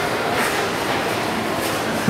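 Steady background noise inside a store: an even rumble and hiss with no distinct event.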